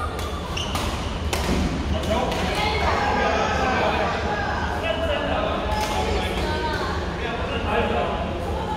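Badminton rackets striking a shuttlecock in a rally, a string of sharp hits, most in the first few seconds and one more near six seconds, echoing in a large sports hall over the voices of other players.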